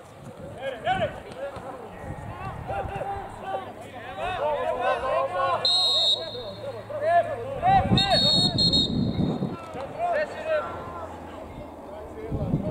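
Players and spectators shouting across an open football pitch, with a referee's whistle blown twice: a short blast about six seconds in and a longer one about two seconds later, stopping play for a player who is down.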